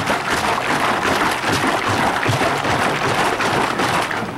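Sugar and water sloshing and churning inside a one-gallon plastic jug that is being shaken hard, a dense, continuous rushing noise. The jug is left partly empty so the liquid can move, and the shaking is dissolving the sugar into simple syrup.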